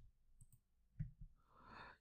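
Near silence with two faint short clicks about a second in, then a soft breath near the end.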